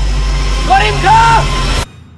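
Trailer soundtrack: a deep, steady low drone with a brief voice-like sound over it in the middle, all cutting off sharply just before the end.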